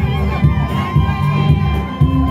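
Crowd cheering and shouting over loud amplified music with a steady beat of about two a second.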